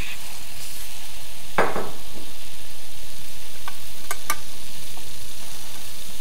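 Diced carrot, parsnip and onion sizzling steadily in a hot pan as they brown and caramelise, with a few light clicks a little past halfway.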